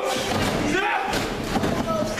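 Wrestlers' bodies hitting the canvas of a wrestling ring, a few heavy thuds on the ring mat, with voices shouting over them.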